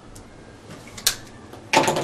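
Marker strokes on a whiteboard as a brace is drawn, with faint light ticks and then one sharp click about a second in.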